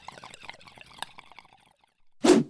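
Faint fading tail of the intro music: scattered soft clicks and crackle dying out into silence about one and a half seconds in.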